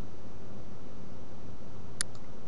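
Steady hiss with a faint low hum from the recording setup, with one sharp click at the very end.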